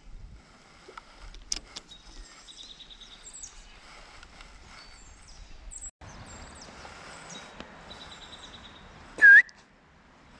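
Small birds chirping and trilling over a faint, steady outdoor hiss. Near the end comes one brief loud cry with a sharp bend in pitch.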